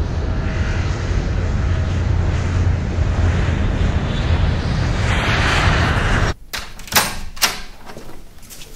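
Jet airliner climbing after takeoff: a steady engine rumble and hiss that grows brighter toward the end and cuts off suddenly about six seconds in. Then three sharp knocks and clunks at a door.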